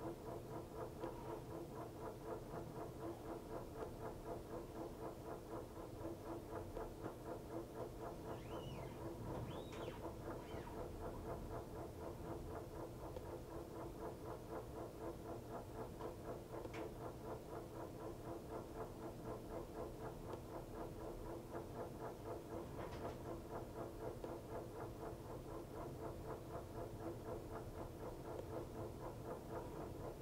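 Montgomery Ward Signature 2000 top-load washer filling: water spraying down the agitator into the tub over a steady hum with a fast, even pulsing. A few faint high squeaks come about nine to ten seconds in.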